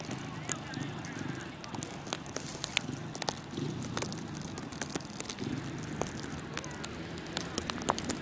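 Indistinct voices of people on the ice, too faint to make out, with many scattered sharp clicks.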